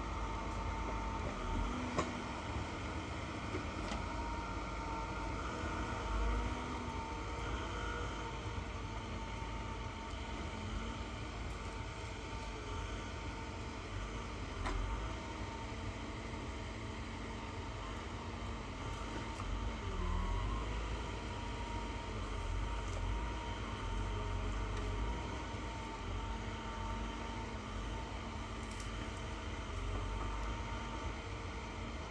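Vimek 870 forwarder running at a distance, its engine and hydraulic crane working steadily with a thin high whine, plus a few sharp knocks as logs are handled.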